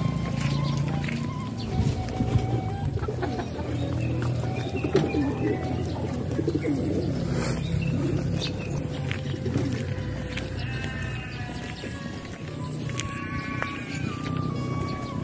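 Background music with birds calling over it, including short higher calls near the end.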